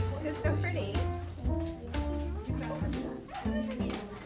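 Background music with a steady pulsing bass line and a melody in held notes, over indistinct voices.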